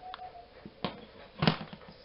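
Two sharp knocks about two-thirds of a second apart, the second louder, after a brief pitched tone fades at the start.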